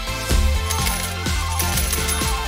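Coins clinking and dropping, a run of sharp clinks about three a second, over background music.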